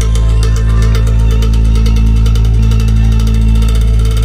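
Loud live concert intro played through the PA, with a heavy, sustained bass drone, held synth-like tones and a fast, even ticking beat above.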